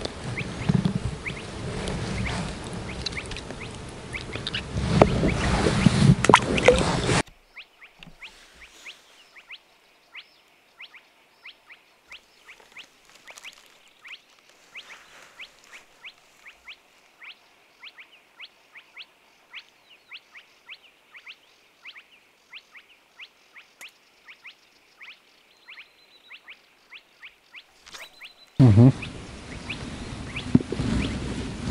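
Close rustling and handling noise as a small crucian carp is held and unhooked by hand. It cuts off sharply about seven seconds in, giving way to a quiet night with a steady series of short, high chirps, about two a second, from a calling insect or bird. Handling noise returns near the end.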